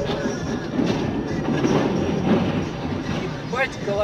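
Rumbling, grinding crash noise of a truck's trailer scraping along the highway barrier, heard from inside a following car. A voice cries out near the end.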